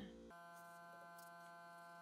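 Faint, steady electrical buzz in the recording, a hum with several even overtones that holds one pitch throughout.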